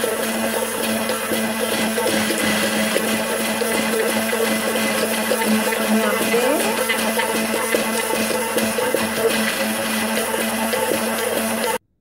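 Hand-held immersion blender running steadily in a plastic jug, whizzing hard-boiled egg yolk into an oil, lemon and garlic emulsion. The motor holds one steady hum and cuts off suddenly near the end.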